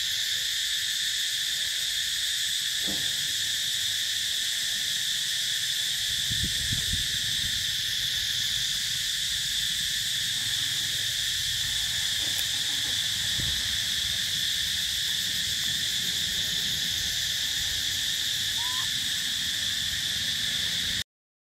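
Steady insect chorus: an unbroken, high-pitched drone in several pitch bands that holds the same level throughout.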